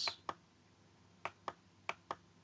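A few faint, sharp clicks of a computer mouse advancing presentation slides: one just after the start, two close together about a second and a quarter in, and one near the end.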